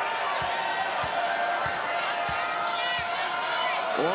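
A volleyball bounced repeatedly on the court floor before a serve: about five dull thuds, roughly two thirds of a second apart, over a steady crowd murmur.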